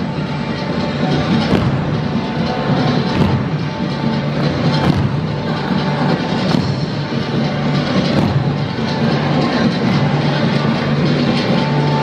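Loud recorded music with a strong accent recurring about every second and a half.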